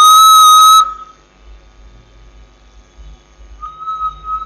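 A single steady whistled note lasting under a second, loud enough into the computer microphone to distort. About three and a half seconds in, the same note comes back more quietly, played back through the computer's speaker.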